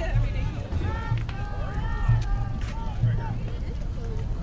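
Children's high-pitched voices calling out over and over in rising-and-falling shouts, with wind rumbling on the microphone.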